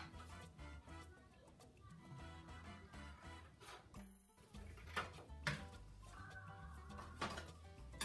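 Quiet background music with a steady bass line, and a few faint snips of scissors cutting paper.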